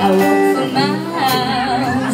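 Live rockabilly band: a female vocalist sings over upright bass, drums and electric guitar, holding one long note with vibrato about a second in.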